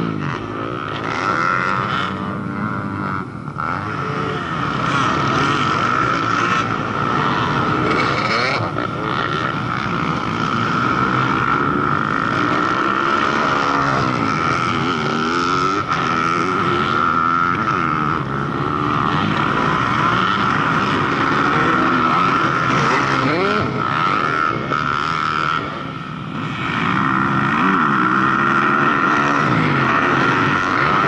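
Several motocross dirt bikes running on the track, their engines revving up and down over and over as they accelerate and shift. The engines get louder about four seconds before the end as bikes come up to the jump.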